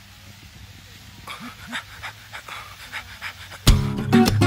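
A person's short, quick breaths, panting, over a low steady hum. Near the end, strummed acoustic-guitar music starts suddenly and loudly.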